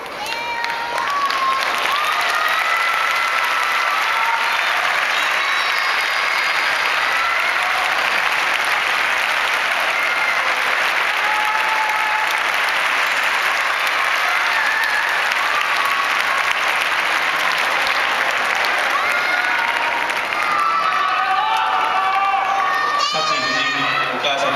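A large audience applauding steadily, with scattered voices calling out over the clapping. Voices come through more clearly near the end.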